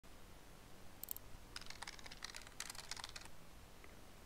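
Typing on a computer keyboard: two quick clicks about a second in, then a rapid run of keystrokes lasting nearly two seconds, and a single faint click near the end.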